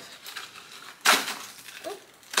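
Glass straw set being handled: a few light clicks, then one sharp clink about a second in.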